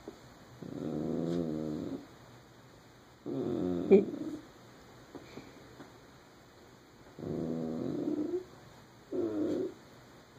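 Shetland sheepdog 'talking': four drawn-out vocalizations of about a second each, wavering in pitch, the last one shorter. She is asking for her ball, which is stuck under the couch.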